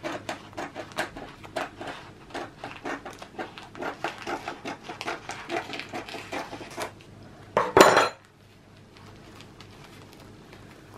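Kitchen scissors snipping through a sheet of sponge cake, a quick run of short crisp snips at about three a second. A single louder clatter comes about eight seconds in, and it is quieter after that.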